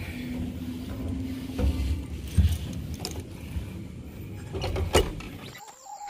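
Footsteps going up a staircase, with irregular low knocks and a few clicks.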